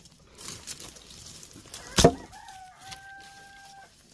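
A rooster crowing: one long held call through the second half. Just before it comes a single sharp strike, the loudest sound, with small knocks and rustles of brush-clearing before that.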